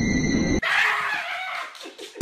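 Low rumbling noise with a steady high whine, cut off about half a second in by a loud, shrill, scream-like cry that fades away over about a second.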